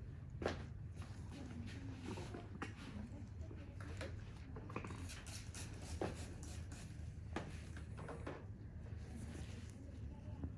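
Faint room tone: a low steady hum with scattered small clicks and knocks through it.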